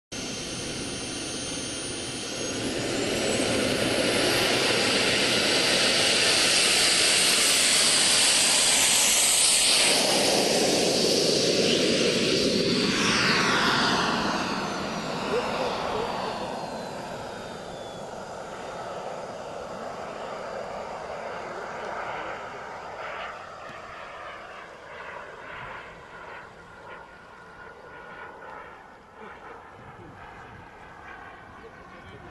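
A CARF Tutor model jet's small gas turbine spools up with a high whine rising in pitch about two seconds in, then runs loud at full power through the take-off. Around the middle its pitch drops as it passes, and the jet noise fades as the model flies away.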